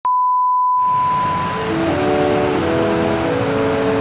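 Steady 1 kHz reference tone of a bars-and-tone test signal, lasting about a second and a half. A loud even hiss comes in just before the tone stops, and music with held notes starts under the hiss about two seconds in.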